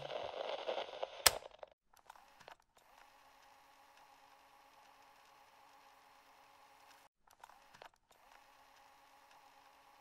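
A short, noisy sound for the first second and a half, ending with one sharp click, then near silence with a faint steady hum for the rest.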